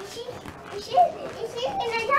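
A toddler's voice in play: short pitched vocal sounds and babble, with a brief louder cry about a second in.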